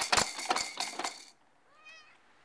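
Plastic clattering and rattling of a baby's Exersaucer and its toys for about a second as the baby bounces and bangs on it. Near the end comes a brief, high, rising squeal from the baby.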